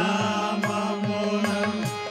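Carnatic-style devotional bhajan music: a long held note over evenly spaced drum strokes, about four or five a second. The held note breaks off near the end.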